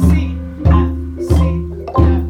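Wooden Orff xylophones and marimbas played by a group in a repeating drone pattern, bar tones ringing between beats. Underneath is a recorded drum beat with a heavy kick about every two-thirds of a second.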